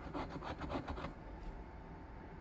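A coin scratching the coating off a VIP Millions lottery scratch-off ticket. It makes a quick run of short scraping strokes, about ten a second, for roughly the first second, then goes quieter.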